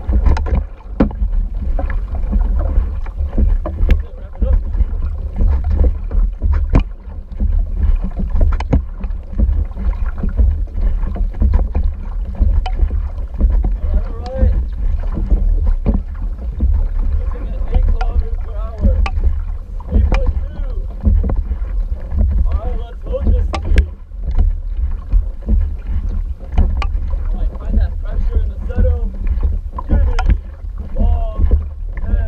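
Outrigger canoe being paddled hard: loud wind rumble on the camera microphone, with irregular splashes and knocks of paddle strokes and water against the hull.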